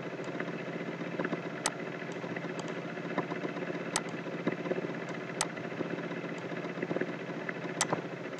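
Steady background hum made of several steady tones, with a few sharp clicks of a computer mouse as objects are selected and moved.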